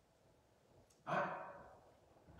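Near silence with faint room tone for about a second, then a man's voice saying a single drawn-out word, "I," that fades away.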